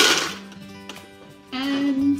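Ice cubes tipped from a cup into an empty blender jar: a loud, brief clattering rush right at the start. Soft background music runs underneath.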